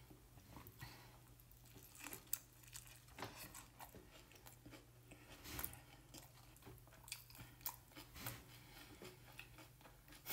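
Faint chewing of a large mouthful of burrito wrap: soft, irregular mouth clicks and crunches, over a low steady hum.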